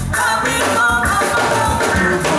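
Live band music: electric guitar and drum kit playing, with a male singer's vocals over them.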